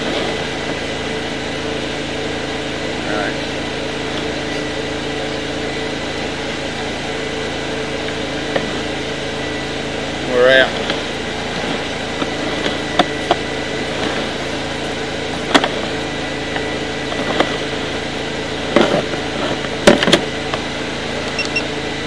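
An engine idling steadily with a constant hum. A short voice is heard about ten seconds in, and a few sharp clicks and knocks come in the last several seconds.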